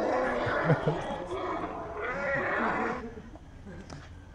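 Recorded lion roaring, played through a phone's small speaker, fading off about three seconds in.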